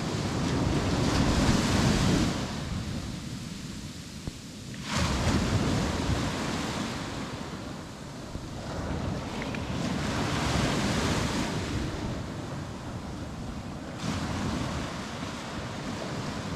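Sea waves breaking and washing up the shore in surges every few seconds, one crashing in sharply about five seconds in, with wind buffeting the microphone.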